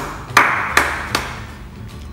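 Four slow, ironic hand claps a little under half a second apart, each with a short ring after it, mock applause for a bad special effect.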